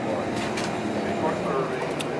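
Steady engine and road noise heard from inside a moving city bus.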